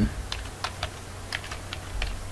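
Computer keyboard being typed on: about half a dozen separate keystrokes at an uneven pace.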